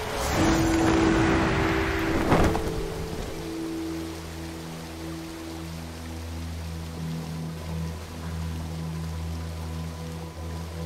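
Film soundtrack: a rushing whoosh sound effect for the first two and a half seconds, ending in a sharp hit, followed by a low, steady sustained drone of background music.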